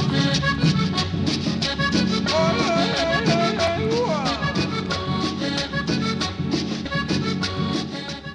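Latin dance music played loud over a sound system, with a steady, even beat and a wavering melody in the middle, beginning to fade right at the end.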